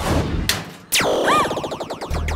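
Trailer sound effects in a break in the music's beat: a whoosh and a sharp hit about half a second in, then a steep falling swoosh and a short tone that rises and falls, with a rapid rattling tail.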